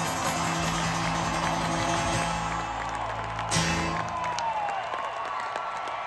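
A live rock band's closing chord rings out, guitar prominent, over a cheering crowd. The held notes stop about four seconds in, leaving the crowd cheering.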